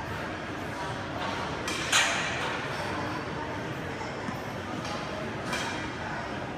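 Busy gym room sound with background voices, and a sharp, loud noise burst about two seconds in, with a weaker one near the end.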